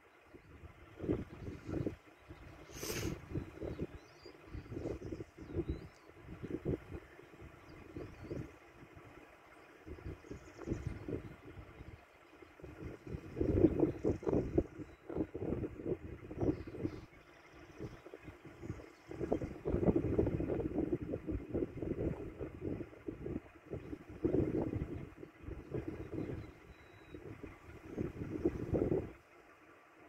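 Wind buffeting the phone's microphone in irregular gusts, strongest near the middle and again a little later, over the faint steady running of an idling car engine.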